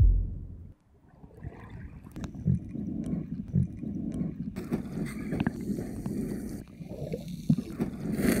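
A deep thud that fades within a second, then muffled underwater sound: churning water with dull knocks and bubbling, heard from beneath the surface.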